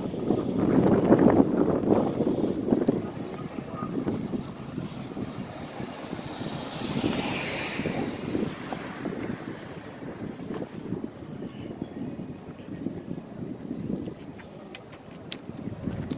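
Wind buffeting the microphone, with a rough rumble that is strongest in the first few seconds and a whoosh about halfway through.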